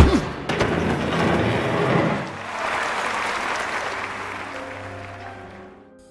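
Audience applauding over background music; the clapping starts suddenly and fades away near the end.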